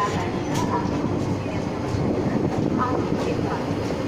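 Coach wheels rumbling steadily on the rails of an electric-hauled express train pulling slowly out of a station, heard from the coach's open doorway.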